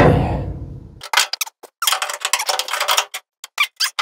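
Steel brake-pedal parts being handled and fitted: a knock at the start, then a run of irregular light metal clinks and rattles.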